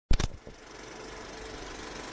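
Intro sound effect: a brief burst of loud, sharp clicks, then a steady mechanical rattle that slowly grows louder.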